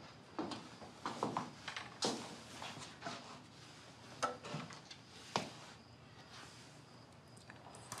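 Scattered clicks and knocks of a wooden wardrobe door being handled and swung open, bunched in the first five seconds or so and then fading to quiet.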